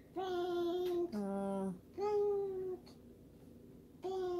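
Young child singing three short held notes in a row, each under a second, the middle one lower than the other two.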